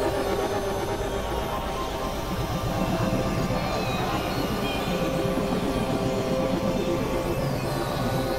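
Dense experimental music mix, several tracks layered at once: held drone tones over a rough, churning, noisy texture at a steady level.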